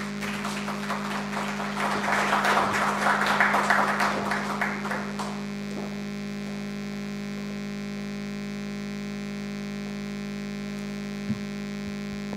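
Audience applause that builds to a peak about three seconds in and dies away after about five seconds, over a steady electrical mains hum from the sound system.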